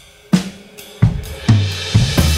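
Opening of a recorded indie song on drums alone: four separate drum hits about half a second apart, each left to ring, before the rest of the band comes in.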